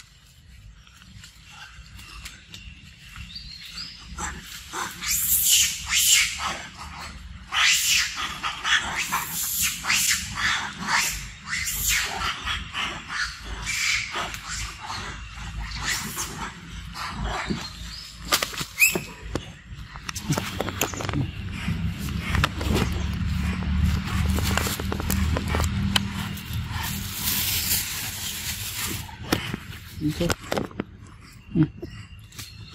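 Macaque biting and chewing a ripe mango at close range: irregular wet bites and smacks. A low rumble joins in during the second half.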